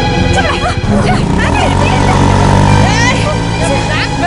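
Film soundtrack mix: background score with a sustained low note that changes pitch twice, under several voices shouting and calling out.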